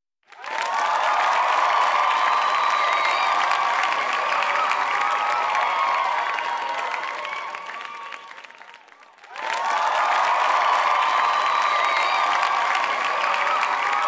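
Crowd applause and cheering, with whistles, laid on as an outro sound effect. It starts just after the beginning, fades away about eight to nine seconds in, and starts over just after that.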